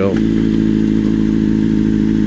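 2008 Honda CBR1000RR's inline-four engine running at a steady, unchanging engine speed under the rider.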